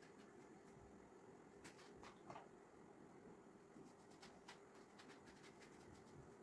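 Near silence, with a few faint small clicks and scrapes of a knife scooping the flesh out of a halved eggplant.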